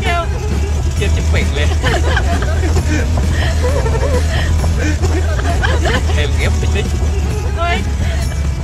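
Several people talking and laughing over the steady low rumble of an open-top four-wheel-drive vehicle's engine running.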